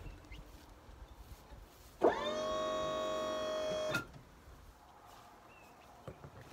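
A small electric motor whines. It starts about two seconds in, rising in pitch as it spins up, runs steadily for about two seconds, then stops abruptly.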